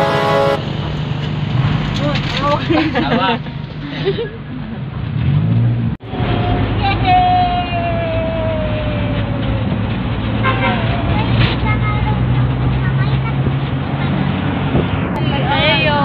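A vehicle's engine droning steadily, heard from inside its rear passenger cabin as it drives, with passengers' voices over it. The sound cuts out briefly about six seconds in.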